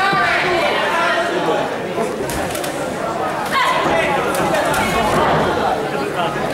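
Spectators' and cornermen's voices shouting and chattering over one another around a kickboxing ring, with a few short sharp knocks.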